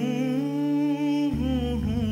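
Background music: a voice humming a slow, wavering melody over steady sustained chords, moving to a new note about two-thirds of the way through.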